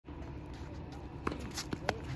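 Quiet outdoor hard-court tennis ambience with a few faint short taps and scuffs in the second half.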